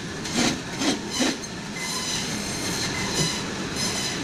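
Meat band saw running, its blade cutting through frozen salmon into steaks, with three short louder bursts in the first second and a half, then an even, steady running noise with a faint whine.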